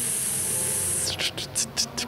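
A person hissing a long drawn-out "sss" through the teeth while thinking over a question. The hiss stops about a second in and is followed by several short hissed puffs.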